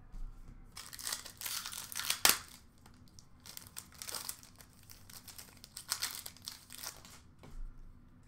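Trading-card pack wrappers crinkling and cards rustling as hands handle packs and cards, with a sharp click a little over two seconds in.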